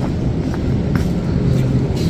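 Supermarket background noise: a steady low rumble and hum, with a few faint clicks.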